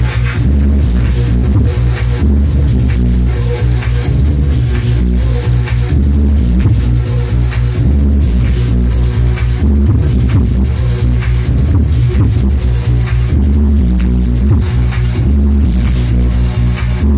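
Electronic dance music from a DJ set playing loud over a club sound system, with a heavy, steady bass and a regular beat.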